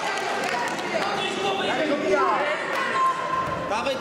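Voices of men shouting and talking over one another, echoing in a large sports hall, with a short held high call about three seconds in.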